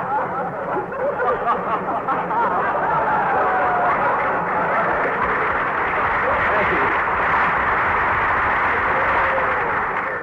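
A large studio audience laughing steadily for the whole stretch after a punchline, many voices blended into one sustained wash, heard on a narrow-band 1940s radio broadcast recording.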